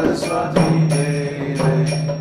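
A man chanting a devotional mantra in a singing voice over a sustained keyboard chord, with a few sharp strokes on a mridanga (khol) drum.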